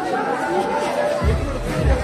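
Many people talking at once in a packed hall. A bit past halfway through, loud music with a deep bass comes in under the chatter.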